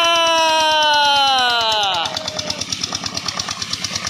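A man's long drawn-out call, held on one slowly falling note, ending about halfway through. Under it, the single-cylinder engine driving the tubewell pump runs with a steady, rapid thudding, left alone in the second half.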